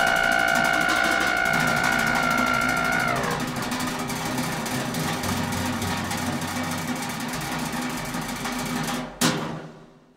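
Closing bars of a free-jazz trio piece: a held high wind-instrument note over bass and percussion stops about three seconds in, the bass and drums carry on quietly, and a single sharp percussion strike near the end rings away into silence as the piece ends.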